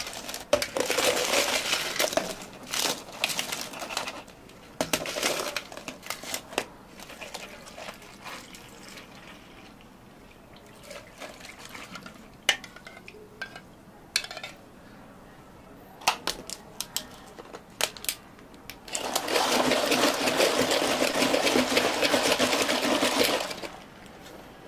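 Ice cubes tumbling from a plastic scoop into plastic cups with rattles and clinks, then liquid poured over the ice with scattered clicks. Near the end comes a loud, continuous rattling noise lasting about four seconds, as the drinks are mixed.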